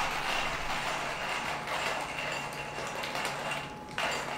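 Coffee beans being crushed in a stainless-steel hand coffee grinder as its crank is turned: a steady, dense crunching and crackling, with a brief break near the end.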